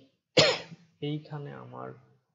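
A man coughs once, sharply, about half a second in, then goes on speaking.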